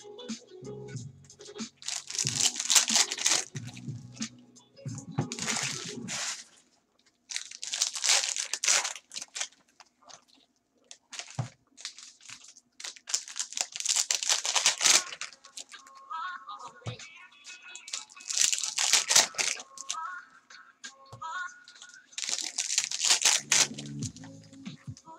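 Foil trading-card pack wrappers being torn open and crinkled by gloved hands, in about six short bursts a few seconds apart. Background music plays underneath.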